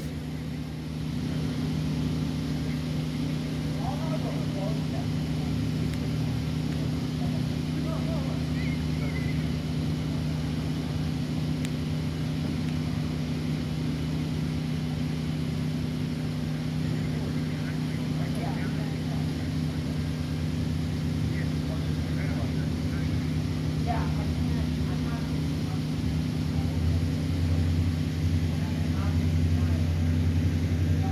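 A steady low engine hum, an engine running at a constant idle, growing a little louder near the end.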